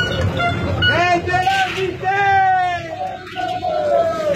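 A group of people laughing and calling out, with one long drawn-out, slightly falling cry in the second half.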